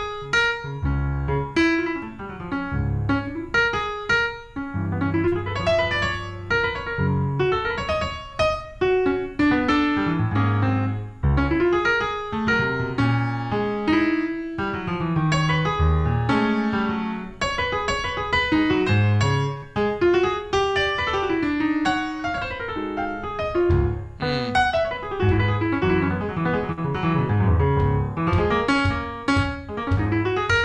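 Solo Steinway grand piano playing a jazz twelve-bar blues without a break: quick right-hand runs and chords over a strong bass line.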